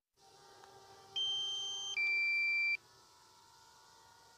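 Two-tone alert from a drone's controller app: a steady higher beep of under a second, followed at once by a steady lower one, over a faint hum.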